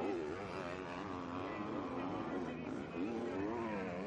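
Motocross bike engines revving on the track, the pitch swooping up and down several times as the throttle is opened and shut over the jumps.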